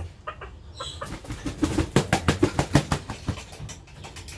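A rooster making a fast run of sharp beats, about eight a second, that starts about a second in, peaks midway and fades out.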